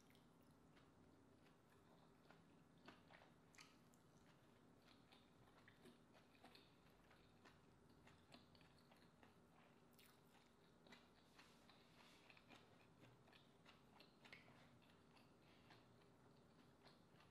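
Faint, soft chewing and mouth sounds of a person eating green-lipped mussels and rice, with small clicks and smacks scattered throughout.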